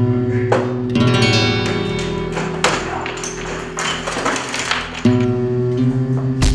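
Background music: flamenco-style acoustic guitar strumming ringing chords, with fresh chords struck about a second in and again near the end.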